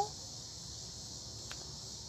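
Cicadas buzzing in a steady chorus, a continuous high-pitched hiss.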